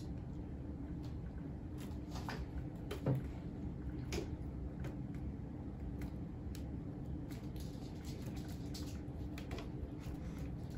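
A serrated knife cutting honeycomb out of a wooden frame along the wood: a few soft, scattered scrapes and clicks of the blade against the wax comb and the frame, over a steady low hum.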